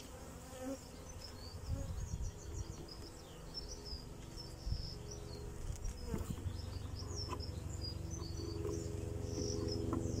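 Honeybees buzzing around an opened hive, a steady hum that grows louder over the second half as the colony is disturbed. A few light clicks near the middle come from a metal hive tool prising up a frame.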